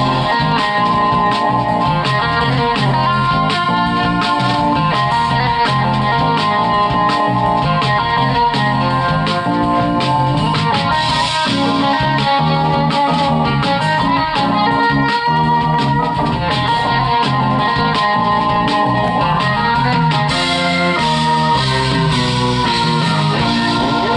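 A recorded song playing back from a copied (burned) audio CD in a Sony CDP-C315 five-disc carousel CD player, running in shuffle mode. The music is loud and continuous with a steady beat.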